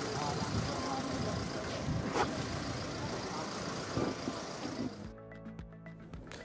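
Outdoor ambience beside a minibus: a vehicle running, with the low murmur of people nearby. About five seconds in it gives way to quieter studio room tone with a steady hum.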